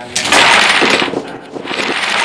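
Wooden Jenga tower collapsing: a loud, dense clatter of blocks tumbling onto the tabletop, in two swells, the second starting about a second and a half in.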